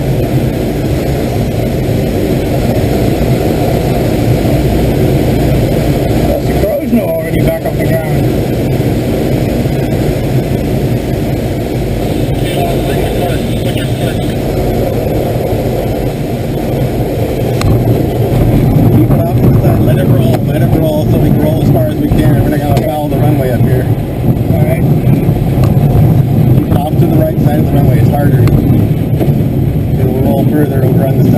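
Airflow rushing over a glider's canopy during the landing, joined in the second half by the louder rumble and jolting of the landing wheel rolling over a rough dirt strip.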